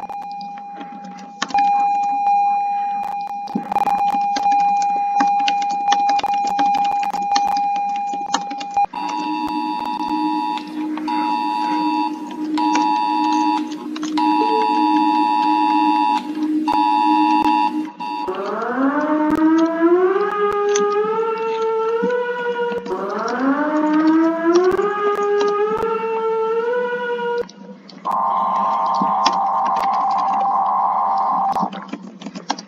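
Emergency alert alarm tones played back on a computer: a steady high tone for about nine seconds, then a two-tone beep that pulses on and off, then two rising siren sweeps, and a harsh steady tone near the end. Keyboard clicks from typing run over the tones.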